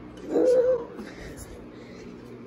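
A woman's short whining groan of disgust, held at one pitch for about half a second near the start.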